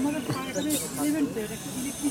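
People talking, with a short burst of hiss a little under a second in.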